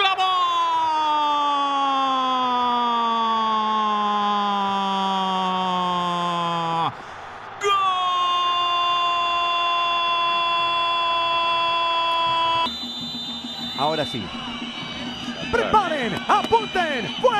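A Spanish-language football commentator's drawn-out goal cry: one long held shout whose pitch slides steadily down for about seven seconds and then breaks off. After a brief gap comes a second long cry held at a steady pitch for about five seconds, followed by excited commentary near the end.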